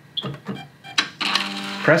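Keypad press on a BioTek ELx405 plate washer: a few clicks and a short high beep, then a sharp click. About a second in, the plate carrier's drive motor starts a steady hum as it moves the carrier toward the dispense position.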